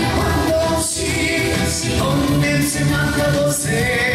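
Male vocal singing a Korean pop song over a backing band track, holding long notes with vibrato.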